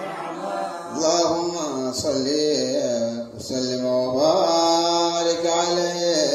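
A man chanting a devotional qasida in praise of the Prophet Muhammad, holding long, drawn-out notes that bend up and down, with short breaths between phrases.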